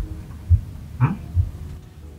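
Soft background music: low bass thumps about twice a second over a faint sustained pad, with a man's brief questioning "Hmm?" about a second in.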